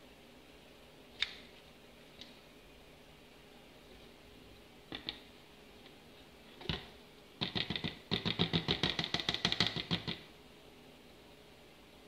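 Handling of a handheld pH meter and a plastic measuring cup: a few scattered light clicks and taps, then about three seconds of fast, even scratchy rattling, roughly a dozen strokes a second, as the meter is wiped with a paper towel.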